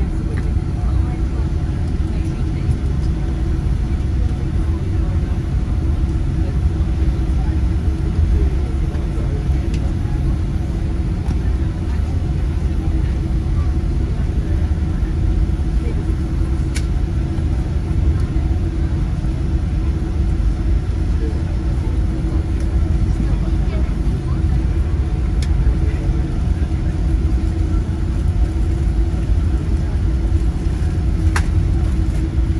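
Cabin sound of a Boeing 787-8 taxiing after landing: the steady low rumble of its GEnx-1B engines at idle and the airframe rolling over the taxiway, with a steady hum and a few faint clicks.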